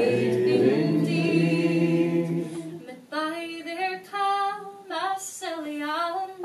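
Unaccompanied singing of a traditional Scottish ballad. For about the first three seconds several voices, lower ones among them, hold a long note together. Then a single woman's voice carries on alone.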